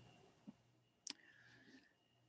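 Near silence: room tone with two faint clicks, one about half a second in and one about a second in.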